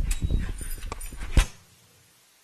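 A rapid, irregular run of knocks and thumps close to a microphone, the last and loudest near the end, cutting off abruptly about a second and a half in.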